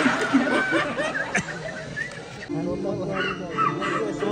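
Film soundtrack heard through cinema speakers: overlapping voices with some laughter, then about two and a half seconds in, music with a steady held note comes in as the scene changes.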